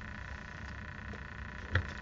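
Faint steady background hum, with one light tap near the end as a plastic craft glue bottle is handled on the cutting mat.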